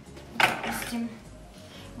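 Small pruning scissors picked up off a tabletop: one sharp metallic clatter about half a second in.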